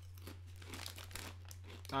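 Faint crinkling of a plastic snack bag being handled, in short irregular crackles, over a steady low electrical hum.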